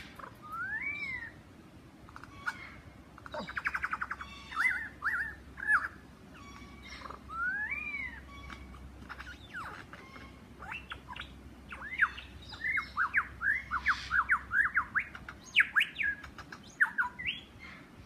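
Superb lyrebird singing a long, varied run of loud whistled phrases that seem able to come from another direction. Slurred whistles rise and fall in arcs, there is a rapid rattle of notes about four seconds in, and in the second half comes a fast string of short sweeping whistles.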